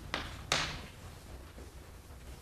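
Chalk knocking against a blackboard during writing: two sharp taps about a third of a second apart, the second louder, over faint room hum.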